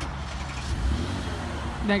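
The 2017 Porsche Cayenne S's engine idling after a remote start, a steady low hum that swells briefly about a second in.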